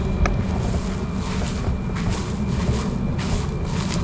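Wind buffeting the camera's microphone: a steady low rumble with uneven gusts, and a small click about a quarter second in.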